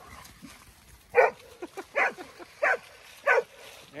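A dog barking four times, short sharp barks about two-thirds of a second apart.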